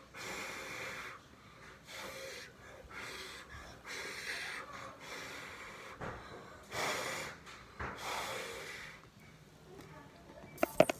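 A person breathing hard in and out through the mouth and nose against an apple held to the face: a series of about seven breathy puffs, each about half a second long, roughly one a second.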